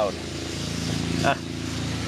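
Petrol lawn mower engine running at a steady pitch, kind of loud.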